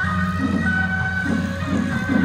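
A suona (Chinese shawm) band playing beiguan music in long held high notes that step from one pitch to another.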